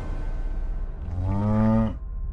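A single cow moo about a second in, lasting just under a second, low-pitched and bending slightly before it stops.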